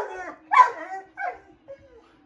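A dog giving three short whining yelps at the TV, each falling in pitch, the later ones quieter.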